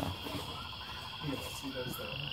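Outdoor ambience: a steady high-pitched trill, with a faster, lower trill of evenly spaced pulses through most of it, under faint voices.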